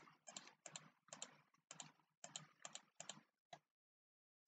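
Faint, quick computer clicking, many clicks doubled, about three a second, stopping shortly before the end.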